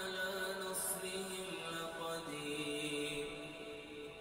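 A man's voice chanting Qur'an recitation in a slow melodic style, holding long notes and moving between them in steps.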